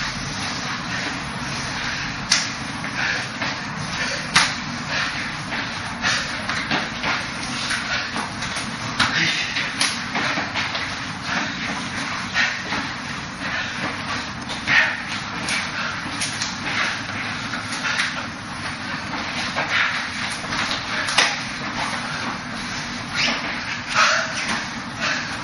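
Irregular slaps and knocks of forearms and hands meeting as two Wing Chun practitioners trade strikes and blocks at close range, a few sharper contacts standing out. Under them runs a steady background hiss.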